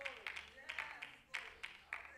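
Faint congregation response in a church: scattered hand claps and voices calling out.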